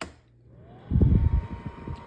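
Electric fireplace heater's selector knob clicking into position, then its blower fan starting: a rising whine that levels off into a steady tone. About a second in, a loud low rumble from the airflow or handling comes over it.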